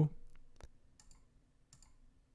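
A few faint computer mouse button clicks, spread irregularly through the two seconds.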